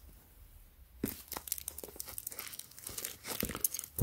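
Clear plastic wrap around a small cardboard package crinkling as hands handle it, a string of small crackles and rustles starting about a second in.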